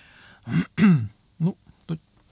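A man breathes in and clears his throat with two short voiced grunts, then says a brief "ну".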